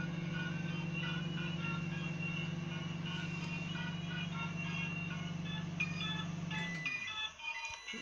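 Microwave oven running with a steady low hum, which slides down and stops about seven seconds in as the heating cycle ends. Music plays over it throughout.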